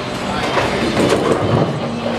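Bowling ball rolling down a wooden lane, a steady rumble against the general din of a bowling alley.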